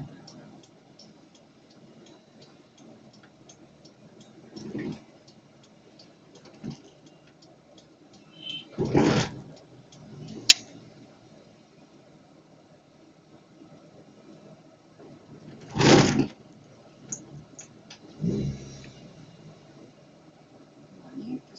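Low steady cabin and street noise from a vehicle crawling in slow town traffic, broken by a few short louder noises, the loudest about nine and sixteen seconds in, and one sharp click about ten and a half seconds in.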